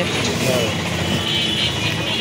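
Steady engine noise, as of a motor vehicle running, with faint voices under it.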